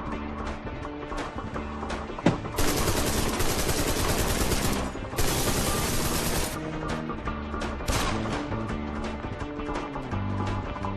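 Rapid automatic gunfire in two long bursts, the first about two seconds long and the second about a second and a half, after a single sharp shot about two seconds in, with a short burst near eight seconds. Background music with a steady beat plays under it throughout.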